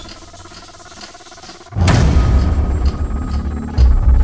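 Shower head spraying water softly. Just under two seconds in, a sudden loud, deep bass sound from the trailer's score comes in and runs on over it.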